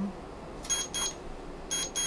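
An electronic beeper sounding two pairs of short, high beeps, a warning that only about 30 seconds of time remain.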